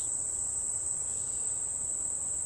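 Steady high-pitched chorus of insects trilling without a break.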